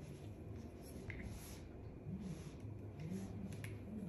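Soft rustling of a fine-tooth comb drawn through hair while a section is parted off, with a few small clicks from handling the comb and hair clip.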